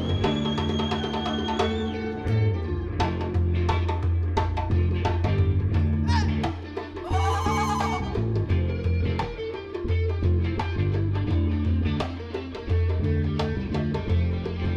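Live band playing an instrumental passage: electric guitar and bass guitar over hand percussion, with djembe slaps and drum hits keeping a fast, steady beat.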